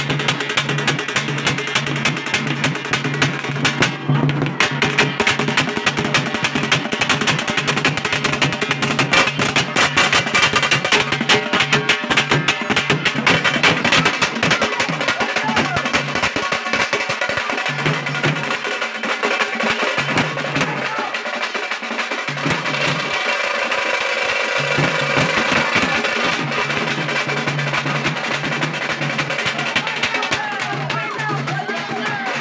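Loud drum-led music with fast, dense drumming throughout and a low steady note that drops out and returns several times, mostly in the second half.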